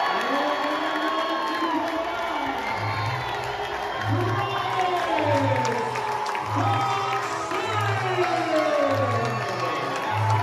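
Wrestling crowd cheering in a hall. About three seconds in, music with a deep bass beat about once a second starts over the cheering, the music that marks the end of the match on a pinfall.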